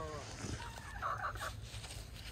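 Backyard chickens clucking softly. A falling call comes right at the start, followed by fainter, scattered low calls.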